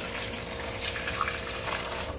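Boiling water poured in a steady stream from a pot into a greasy air fryer basket sitting in a stainless-steel sink, splashing as it fills. The hot water goes over detergent to loosen the grease.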